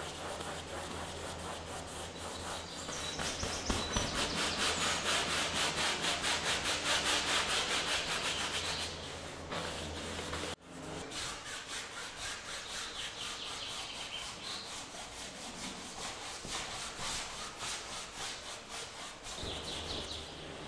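Bristle brush scrubbed quickly back and forth over canvas, working oil paint in. The strokes come at about five a second, loudest in the middle, with a sudden break about halfway through.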